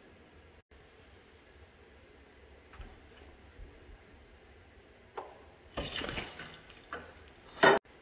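Steel tools clanking against a 3/4-inch ratchet and socket as a cheater bar is worked on the seized front crankshaft nut of a 1936 Caterpillar RD-4 engine: a few light knocks, a clattering burst a little past halfway, then a single loud sharp crack near the end as the nut breaks loose.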